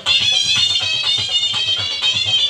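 Shehnai playing a sustained, nasal melody over a steady beat on a dhol, the double-headed barrel drum.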